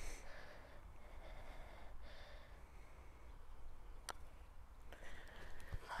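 Faint steady background noise with a single sharp click about four seconds in: a putter striking a golf ball.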